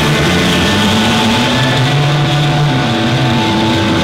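Live instrumental rock band playing loud and distorted, with long held, droning low notes from electric guitar and bass that change pitch once or twice.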